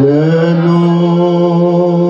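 A man singing one long held note of a hymn without accompaniment. The note slides up slightly as it begins and is then held steady with a slight waver.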